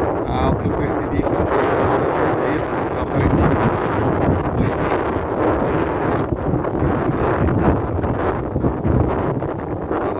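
Wind buffeting the microphone: loud, uneven noise.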